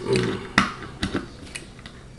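Hands picking up a light bulb and a lamp holder from a workbench: several short, light clicks and knocks of small hard objects being handled.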